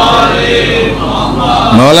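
A congregation of many voices reciting salawat together in unison, a blended chanted chorus of blessings on the Prophet and his family.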